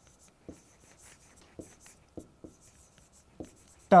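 Chalk writing on a chalkboard: about five short, separate taps and strokes as the words are written.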